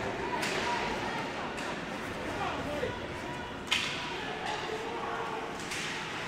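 Ice hockey play heard in an indoor rink: skates scraping the ice and four sharp clacks of stick and puck, the loudest about two-thirds of the way through, over a faint murmur of spectators' voices.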